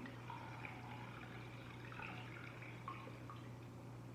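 Hibiscus drink trickling faintly through a mesh strainer into a stainless steel bowl as it is strained, with a few small drips, over a steady low hum.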